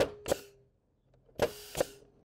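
Pneumatic coil nail gun driving nails into timber fence palings: four sharp shots in two quick pairs, the second pair about a second and a half in.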